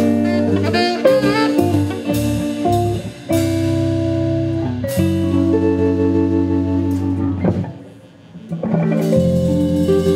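Live band playing an instrumental passage: a saxophone plays long held notes over electric guitars, bass guitar and drums. The music thins out and nearly stops about eight seconds in, then the band comes back in.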